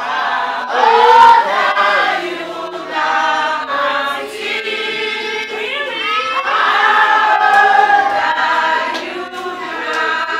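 A group of people singing a song together.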